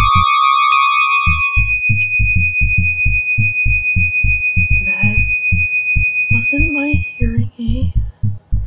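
Horror sound effect: a piercing high ringing tone, like a hearing-aid whine, holding steady until about seven seconds in, with a lower tone alongside it for the first second or so. Under it a low throbbing heartbeat-like pulse runs about three times a second, dropping out briefly right at the start.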